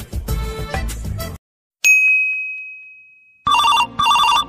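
Background music cuts off about a second and a half in. A single bright ding follows and fades away over about a second and a half. Near the end a mobile phone ringtone starts, a quick run of repeated beeps.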